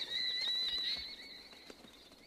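A flock of birds calling as they take flight, a high, thin, wavering twitter that fades out after about a second.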